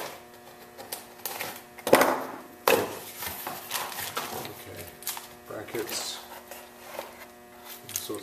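Unpacking brake-kit parts: a small cardboard box is opened and plastic wrapping crinkles while metal caliper brackets and bolts are handled, with two sharp clacks about two and three seconds in. A faint steady hum runs underneath.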